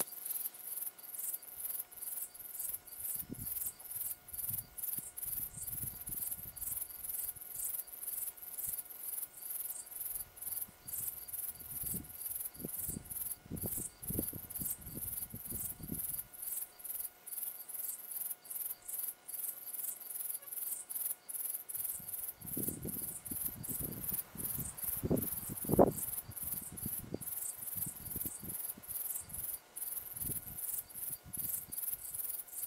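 Insect chorus: a steady, very high-pitched chirping that pulses a few times a second. Low rustling and bumping noises come and go over it, with one louder knock late on.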